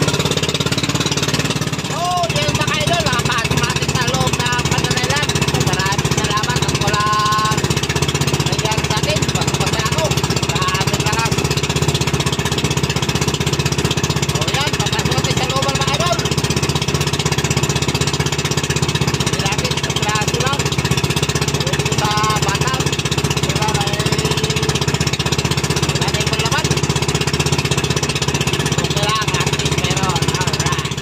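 Outrigger fishing boat's engine running steadily under way, loud and constant, with a man's voice faintly heard over it.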